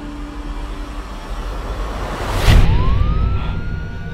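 Police siren winding up, a single tone rising in pitch and then holding steady, just after a loud rushing swell about two and a half seconds in.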